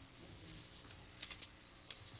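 Quiet room tone with a few faint light clicks, a small cluster about a second in and one more near the end.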